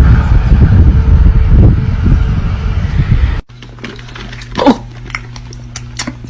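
A golden retriever making a loud, low, pulsing rumble in its throat for about three and a half seconds. After a sudden cut, a quieter steady low hum follows, with a short rising-and-falling whine just under five seconds in.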